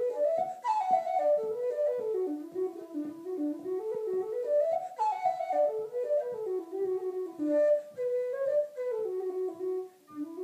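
Metal low whistle playing a tune in quick runs of notes that climb and fall, with a short break for breath near the end.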